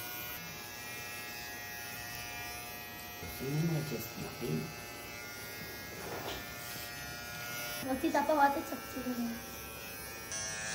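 Corded electric hair clipper buzzing steadily as it cuts a baby's hair down to the scalp.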